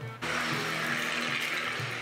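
Background music with a loud rushing, hissing noise that starts just after the beginning and lasts nearly two seconds before easing off.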